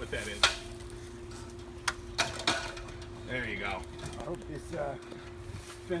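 Aluminium extension ladder being handled and set against a wooden fence, knocking and clinking sharply once about half a second in and three more times around two seconds in, over a faint steady hum.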